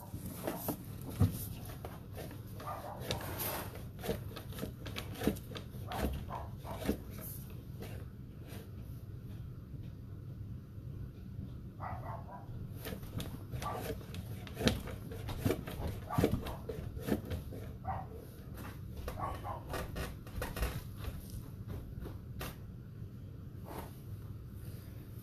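Sewer inspection camera cable being pushed down a floor drain: a steady low hum with irregular clicks and knocks, and a few short pitched sounds scattered through.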